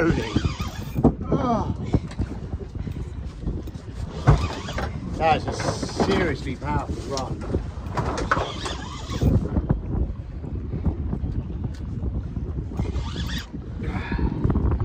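Wind and sea noise around a small open boat drifting at sea, a low rumble over the microphone, with indistinct voices now and then.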